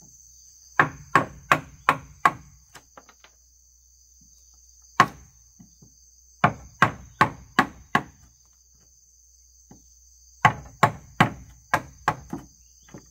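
Wooden mallet striking the handle of a steel chisel cutting into timber, in three runs of about five blows, nearly three a second, with a single blow between the first two runs. Insects trill steadily throughout.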